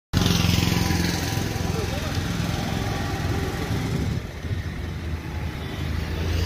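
A motor vehicle engine running steadily, a little louder for the first four seconds. People talk in the background.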